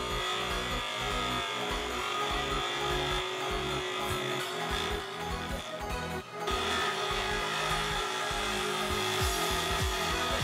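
Bench grinder running as a black plastic spacer puck is held against its wheel and its tabs are ground off, under background music. The sound dips briefly about six seconds in.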